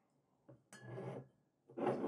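Glass soda bottles being moved and set down on a table: a light tap about half a second in, then a brief glassy clink about a second in.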